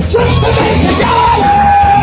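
Live stoner grunge rock band playing loud: distorted electric guitars, bass guitar and drum kit, with a long high note held over the top through the second half.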